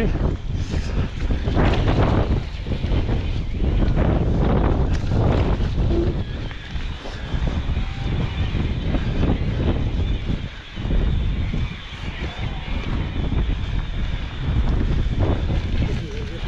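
Wind buffeting the microphone in gusts, over the bumping and rattling of an e-mountain bike riding across rough, wet moorland grass.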